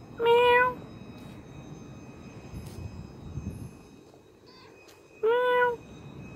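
A tortoiseshell cat meowing twice: one short meow just after the start and another about five seconds in.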